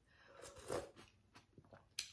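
Faint sounds of a person eating khao piak sen noodle soup: soft chewing and mouth noises, with a few light clicks in the second half.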